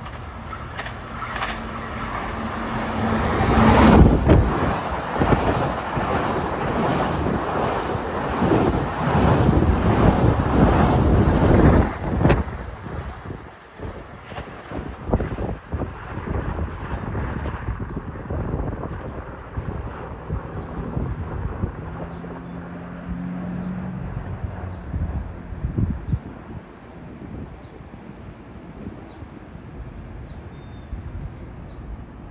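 Long Island Rail Road electric commuter train running past the station platform: a loud rush of wheels on rail and motor noise builds to a peak about four seconds in and stops abruptly near twelve seconds. After that a quieter, wind-blown rumble of a distant train remains, with a faint low hum near the end.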